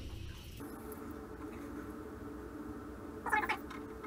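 Water running from an old, newly rebuilt shower valve that has just been cracked open to bleed the line, a faint, steady flow with a low hum. A brief squeaky sound comes about three seconds in.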